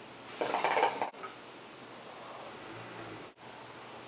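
Hookah being drawn on through its hose: the water in the base bubbles for about half a second early in the draw, followed by a soft, steady hiss of the inhale.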